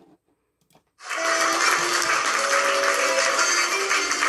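An accordion starts playing about a second in, after a few faint clicks: loud, close held notes with a melody moving over sustained chords.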